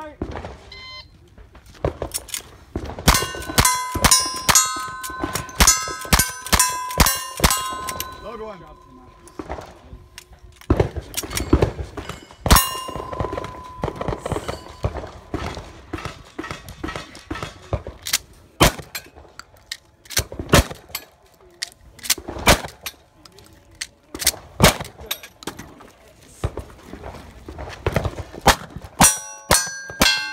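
Cowboy action shooting: a string of gunshots, each hit followed by the ring of struck steel targets. A rapid run of shots with ringing plates comes in the first few seconds, then single, widely spaced shots through the middle, and near the end a quick volley from a single-action revolver with the steel plates ringing.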